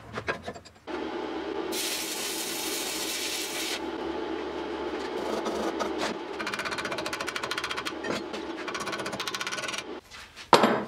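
A few knocks of metal parts being clamped, then the steady crackling hiss of electric welding on steel. The hiss grows sharper for a couple of seconds early on and turns into a fast, even crackle in the second half.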